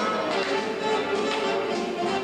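Theatre orchestra playing a Charleston dance number, with a run of quick taps from dancers' shoes striking the stage over the music.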